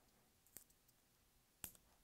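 Two faint clicks from metal pushpins being handled and pressed into a foam craft egg with a magnet-tipped tool. The second click, about a second and a half in, is sharper.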